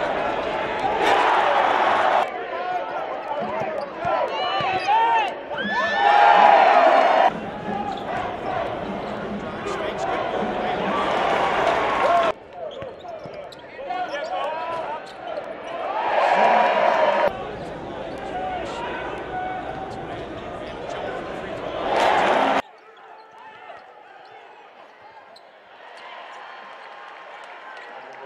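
Game sound from a college basketball arena: crowd noise and voices with a basketball bouncing on the hardwood court, in short stretches that swell and cut off abruptly from one clip to the next. The last few seconds are quieter.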